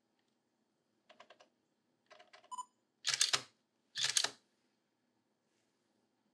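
Nikon DSLR buttons clicking softly, then a short beep, then the shutter firing in two loud clacks under a second apart.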